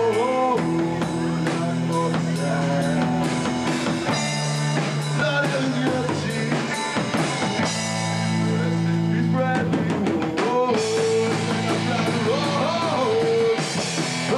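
Live rock band playing: electric guitars over a drum kit, loud and continuous.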